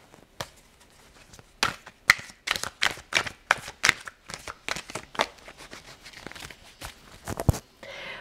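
Tarot cards being shuffled and handled: a quick, irregular run of card slaps and flicks.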